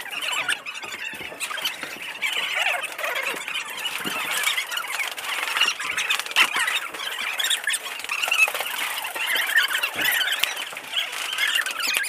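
A continuous clutter of short, overlapping high-pitched squeaks from rubber shoe soles on a smooth concrete floor, with a few sharp clicks scattered through it.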